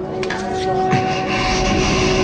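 Soundtrack score of sustained steady tones, with a rushing noise swelling in about a second in and growing louder.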